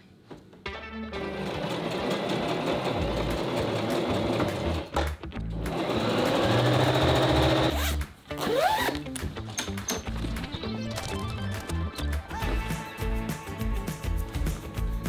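Electric sewing machine running in two long bursts as a seam is stitched, stopping about eight seconds in, with background music throughout.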